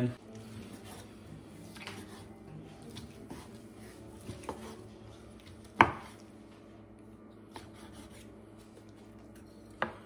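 Kitchen knife slicing through cooked chicken breast on a wooden cutting board, with faint scraping cuts and one sharp knock about six seconds in and a smaller one near the end.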